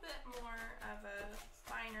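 Chef's knife chopping pecans on a wooden cutting board, repeated light knocks of the blade on the wood, under a woman's talking.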